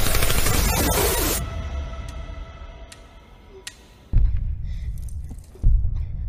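Movie trailer soundtrack: a loud stretch of dense noise cuts off about a second and a half in, giving way to quieter held tones. Then two sudden deep booms, each with a low rumbling tail, land about four and five and a half seconds in.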